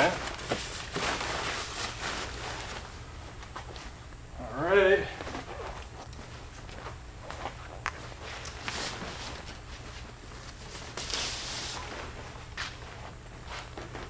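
Tent fabric rustling and scattered light clicks and taps as the Pontiac Aztek factory tent is pulled down and its elastic cords are stretched and hooked, with footsteps and a short vocal sound about five seconds in. A steady low hum runs underneath.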